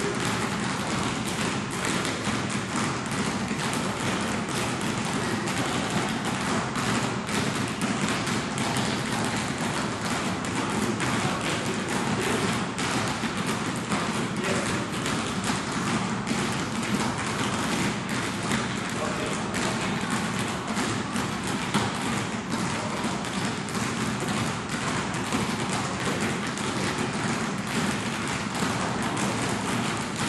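Basketballs bouncing continuously on a court, many thumps overlapping, with indistinct voices mixed in.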